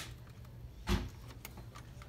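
A single short, dull knock about a second in, over a low steady hum.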